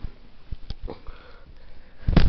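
Handling noise from a handheld camera being moved: several short, soft knocks and rustles.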